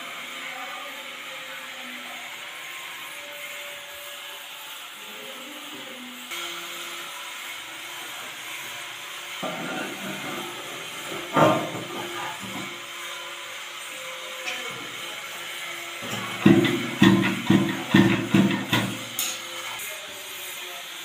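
Knocks and handling noises from work on a toilet being fitted, with one sharp knock about halfway through and a quick run of about seven loud knocks near the end.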